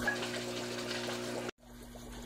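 Aquarium sponge filters and an air line under the sand, water steadily bubbling and trickling over a low hum. The sound breaks off abruptly about one and a half seconds in, then returns quieter.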